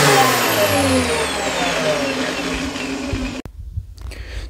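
Milwaukee M18 Fuel brushless angle grinder coasting down after a brief squeeze of its on/off paddle switch. Its whine falls steadily in pitch over about three seconds as the spindle slows from full speed, then cuts off suddenly.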